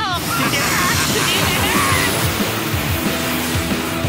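Cartoon spaceship engine sound effect: a steady rushing hiss that starts suddenly as the ship speeds off, over fast background music.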